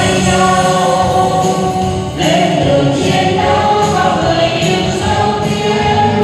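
A mixed group of men and women singing together into microphones, their voices amplified through a sound system, with a new sung phrase starting about two seconds in.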